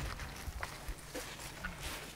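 Dry brush crackling and rustling, with scattered small snaps over a steady hiss.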